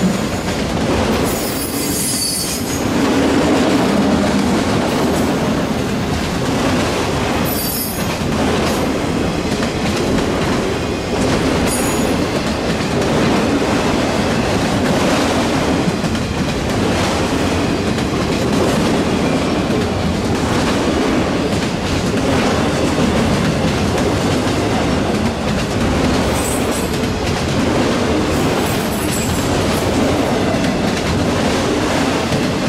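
Freight train of autorack cars rolling past at close range: a steady loud rumble of steel wheels on the rails. Brief high wheel squeals come about two seconds in, around eight and twelve seconds, and twice near the end.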